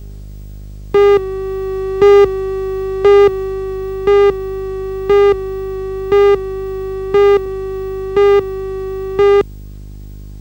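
Videotape countdown leader tone: a steady buzzy tone with a louder beep about once a second, nine beeps in all. It starts about a second in and stops suddenly near the end.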